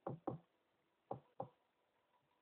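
Four sharp knocks on a hard surface, in two quick pairs about a second apart.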